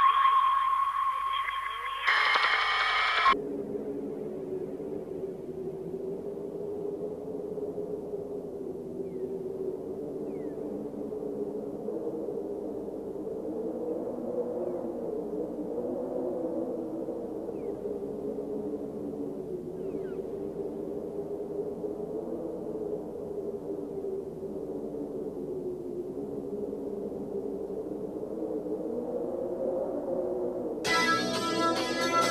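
A brighter passage with a held high tone cuts off about three seconds in. It leaves a sustained synthesizer drone of low layered tones that waver slowly in pitch: the instrumental opening of the song, before the vocals.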